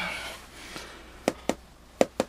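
Two short, sharp clicks about a quarter second apart, a little past halfway, from hand and tool handling at the meter on the bench, in a quiet small room.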